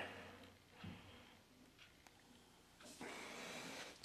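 Near silence: room tone, with a faint soft hiss rising in the last second.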